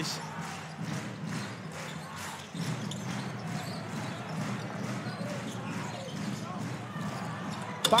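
A basketball being dribbled on a hardwood court, repeated bounces over the steady murmur of an arena crowd.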